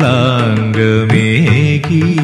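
Carnatic-style Malayalam film song: a melody line that bends and glides in pitch over steady held notes.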